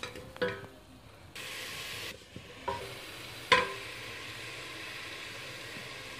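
Diced apples sizzling in melted butter and sugar in a stainless steel saucepan, stirred with a wooden spoon. A steady sizzle starts suddenly about a second and a half in, with three sharp knocks against the pan.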